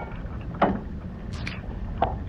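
Steady low rumble of wind on the microphone in wet weather, with a short sound about half a second in and a couple of sharp clicks at about one and a half seconds.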